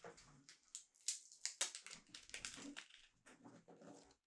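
Faint crinkling and rustling of a plastic hook packet being handled: an irregular run of small crackles and rustles.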